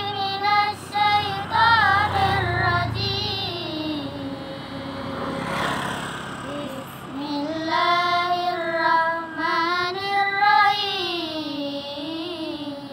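A girl's voice chanting a Quran recitation in a melodic tilawah style. She holds long, drawn-out notes that rise and fall, and sings more softly for a stretch in the middle.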